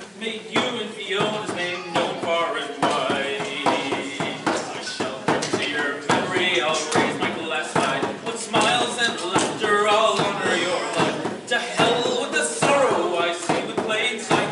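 Bodhrán frame drum beaten with a wooden tipper in a steady rhythm, accompanying a man singing.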